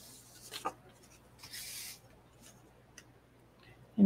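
Faint rustling and brushing of a small watercolor-paper panel being picked up and handled, in a few short sweeps during the first two seconds, with a light tick about three seconds in.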